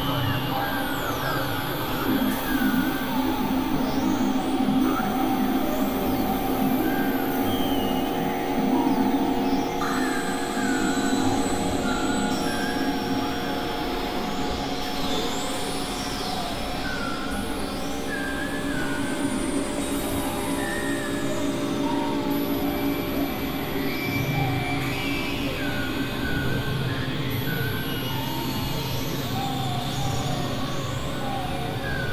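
Several experimental electronic tracks and sounds playing over one another as a dense, steady mix of sustained drones and held tones, with short chirping glides recurring every second or two.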